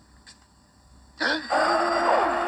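Quiet for about a second, then a man's short vocal grunt, followed at once by a loud, steady rushing sound with held tones under it.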